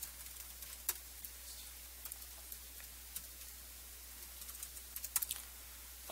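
Scattered keystrokes on a laptop keyboard, faint over a steady low hum, with a quick run of taps just after five seconds in.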